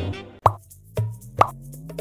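Background music with two short pop sound effects, about half a second in and again about a second later, over a slowly rising tone.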